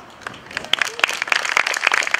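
Audience clapping, starting about half a second in and quickly building to a dense patter.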